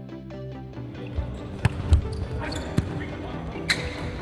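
Arena music that gives way after about a second to the noise of an indoor volleyball hall. A ball smacks on the court floor a few times, then a harder hit comes near the end as play resumes.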